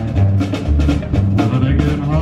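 Live band playing an instrumental stretch of a country song: electric guitar over a walking bass line and a steady drum beat.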